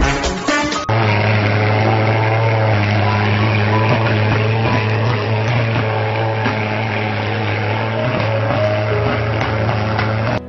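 Dance music for about the first second, then a thermal fogger's pulse-jet engine running with a steady low drone.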